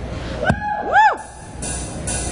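Electric guitar through a distorted amp before the song: a sharp attack about half a second in, then a couple of pitched notes that sweep up and fall back down, followed by a burst of high hiss near the end.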